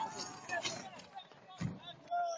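Faint, distant voices of spectators calling out as a rally car leaves the road, with a short dull thump about one and a half seconds in.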